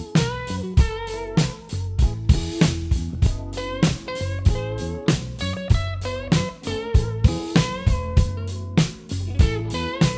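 Electric guitar solo with bent notes from the song's backing track, over a steady drum-kit groove of kick, snare and 16-inch hi-hats played along with it.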